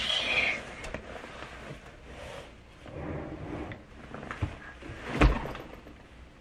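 Soft rustling and a few light knocks, with one sharp thump about five seconds in.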